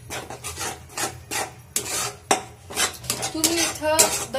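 Steel spatula scraping and stirring a thick masala paste around a metal kadhai, in quick repeated strokes two or three a second.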